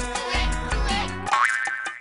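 Commercial jingle music with a steady bass beat. About a second and a half in, a quick rising swoop leads into a held high tone, and the music drops out at the very end.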